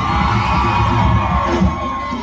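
Recording of a live merengue concert playing on a television: the band playing with a crowd cheering.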